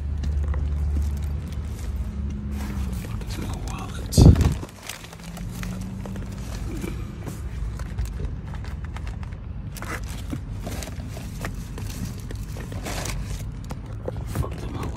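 A car door shuts with one loud thump about four seconds in, and the outside hum drops away after it. The rest is small knocks and rustling as bags and papers are handled inside the car.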